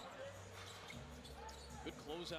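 Faint basketball game broadcast audio: a basketball being dribbled on a hardwood court, with a commentator's voice low in the mix.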